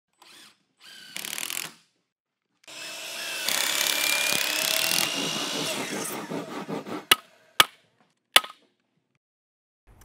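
Woodworking power tool working wood: two short bursts, then a longer run of about four seconds with a faintly rising whine. Three sharp knocks follow.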